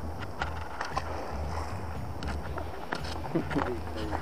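Steady low rumble of outdoor background noise with a few light clicks scattered through it; a faint voice speaks briefly near the end.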